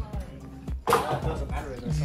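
People's voices talking indistinctly, with music underneath and a few low thuds.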